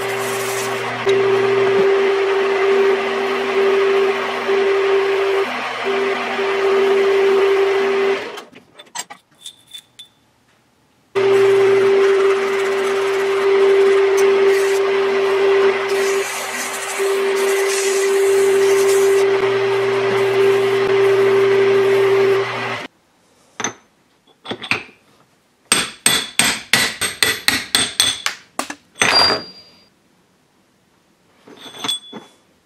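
Small metal lathe running with a steady whine as abrasive cloth is held against a spinning hex-steel shaft to polish it. The lathe stops after about eight seconds, runs again from about eleven seconds and stops at about twenty-three. Near the end comes a quick run of sharp metallic taps, about four or five a second, then a heavier ringing knock.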